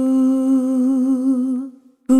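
A single sustained hummed note from a looped vocal sample, held steady and then wavering in pitch before it fades away near the end.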